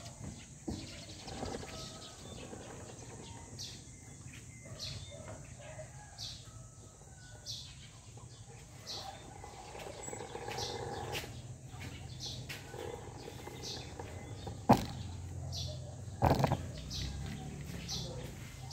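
A small bird chirping over and over, short high chirps about once a second, over a faint low background hum. A sharp knock sounds near the end, with a brief clatter soon after.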